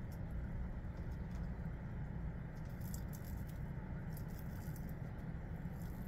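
Faint, scattered scratchy rustles of a makeup brush dabbing eyeshadow onto the skin under the eye, a few clusters a second or so apart, over a steady low background rumble.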